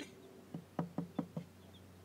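Knuckles knocking on the wooden wall of a homemade chick brooder box: a quick run of about six knocks, starting about half a second in.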